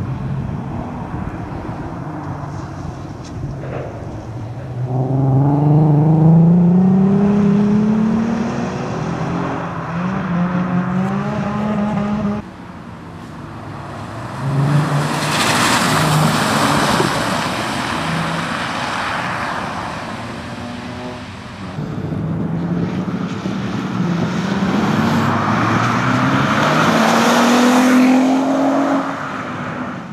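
Audi A3 quattro hatchback rally car accelerating hard. Its engine note climbs and drops back at each gear change. Midway it passes close on a wet, slushy road with a loud rush of tyre hiss, then near the end it accelerates away again through the gears.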